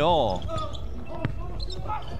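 Basketball bouncing a few times on a wooden indoor court floor during play.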